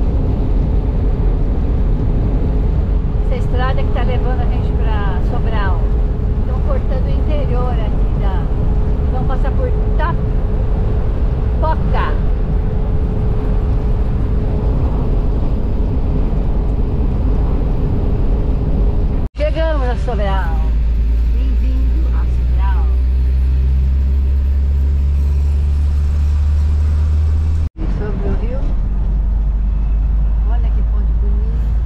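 Volkswagen Kombi van on the move: a loud, steady low rumble of engine and road noise. The sound cuts out briefly about two-thirds of the way in and comes back with a deeper, heavier rumble, then cuts out briefly again near the end.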